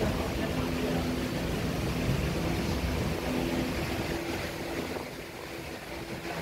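Steady rumbling, rustling handling noise on the microphone as embroidered fabric is moved and handled close to it.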